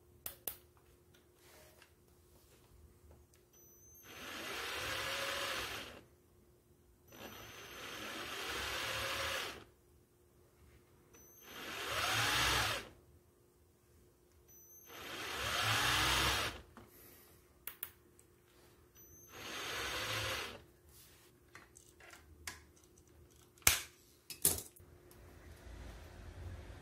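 Cordless drill clamped to a bicycle frame, run in five short bursts of about two seconds each. Its motor whine rises in pitch as it spins up and falls as it slows each time the trigger is pulled and let go. A few sharp clicks come between the bursts, the loudest near the end.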